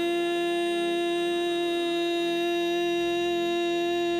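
A woman cantor singing one long held note at a steady pitch into a microphone.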